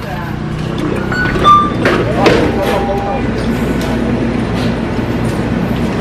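Convenience-store entrance: a few short electronic door-chime tones at different pitches about a second in, over background voices and a low traffic hum.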